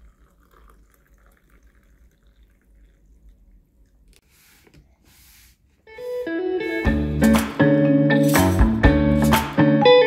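Faint trickle of water poured into a ceramic mug of coffee, then background music with plucked guitar and drums comes in about six seconds in and carries on loudly.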